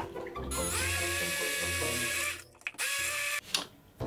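Hand-held immersion (stick) blender running in a plastic jug, blending cream into a milk chocolate ganache emulsion. The motor spins up about half a second in and runs steadily for almost two seconds, then stops, and runs again briefly near the end.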